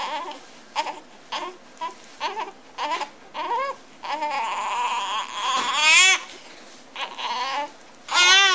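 Newborn babies fussing: a string of short, high cries, then a longer held cry and a louder wail about six seconds in.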